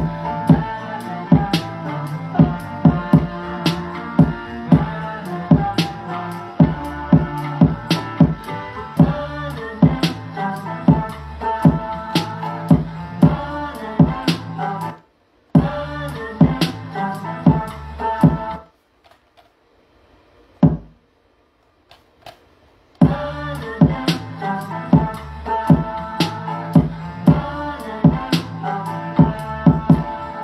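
Sample-based hip-hop beat playing back: a looped Latin song sample with programmed drum hits in a steady rhythm. Playback cuts out briefly about halfway through, then stops for about four seconds with a single hit in the gap before the loop starts again.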